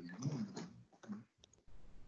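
Faint clicking over a video-call microphone, with one sharp click about one and a half seconds in, the kind of sound of a computer being worked to advance a slide, and a low muffled murmur in the first half second.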